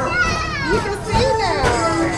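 Children's voices calling out in long, high sounds that slide down in pitch, several overlapping over about a second and a half.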